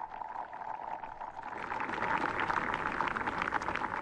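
A crowd applauding as a group song ends, building over the first couple of seconds, with a last held sung note fading out underneath, heard through an old television news recording.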